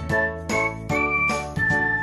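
A short musical jingle: a bright, high melody of a few notes, roughly two a second, over sustained chords.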